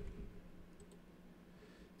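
A few faint computer mouse clicks over quiet room tone, about a second apart.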